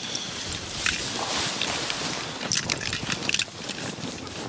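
Dry grass on a layout blind rustling and scraping as a hunter climbs out, then a quick run of crunching steps in snow near the end.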